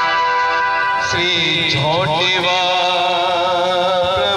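Indian devotional band music: a melody of long held notes that slides from one note to the next about halfway through.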